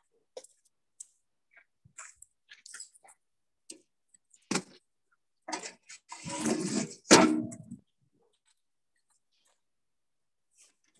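Scattered knocks and clatters of firewood being handled and a log put on the fire in a barbecue pit's firebox. A longer, louder clatter comes about six seconds in and ends in a sharp knock.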